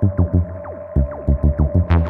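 Electronic music: clusters of fast, deep bass pulses under repeated falling synth sweeps and a steady held tone, the top end muffled until it opens up just before the end.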